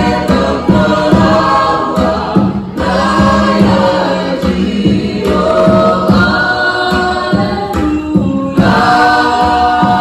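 Many voices singing together in harmony as a choir, holding sustained notes.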